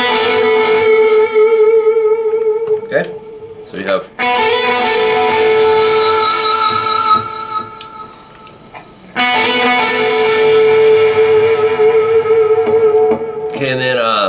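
Distorted electric guitar at low amp volume playing a two-note figure, an open B string ringing against a fretted G-string note. It comes as three held phrases, each shaken with whammy-bar vibrato, with short gaps between them.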